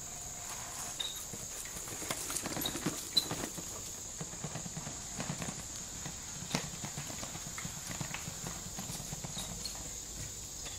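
Electric bicycle rolling over bumpy grass, its frame and rear battery box giving irregular rattles and knocks. Crickets chirp steadily in the background.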